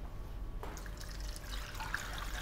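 Water pouring from a plastic jug into a metal pan of raw pig trotters, starting about half a second in and running on steadily. The trotters are being covered with water for their first boil.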